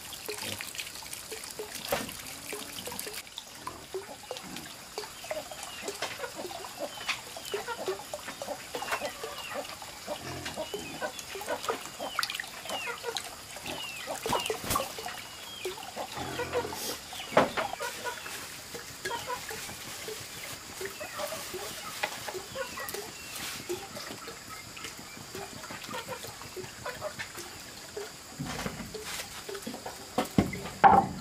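Hands squeezing and kneading raw meat in a bowl of water: wet squelching with many small drips and splashes, and a few sharp clicks.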